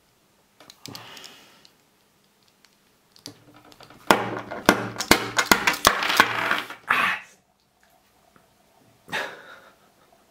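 Cast metal puzzle pieces clicking and clacking as the puzzle comes apart and the pieces are put down on a wooden table. A loud run of sharp clacks comes in the middle, together with a loud vocal outburst.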